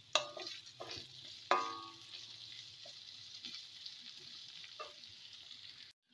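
Sliced garlic and green chilies sizzling in hot oil in a metal wok, stirred with a wooden spatula that scrapes and knocks against the pan, the knocks sharpest just after the start and at about a second and a half.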